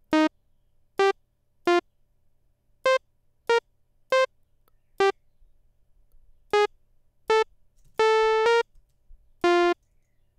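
Thor synthesizer on a blank initialized patch sounding single notes one at a time, about eleven short bright tones of varying pitch at uneven intervals, one held longer near the end. Each note previews as it is drawn into the sequencer, building an arpeggio in C natural minor.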